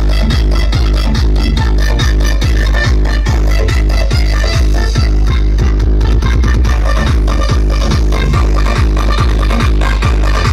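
Loud electronic dance music with heavy bass and a steady kick-drum beat, played through a DJ rig of horn loudspeakers. A quick roll of faster drum hits comes about eight seconds in.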